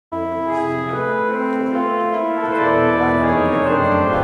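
Pipe organ, the Martin Foundation Concert Organ, playing sustained chords that shift slowly from one to the next. It starts suddenly right at the beginning.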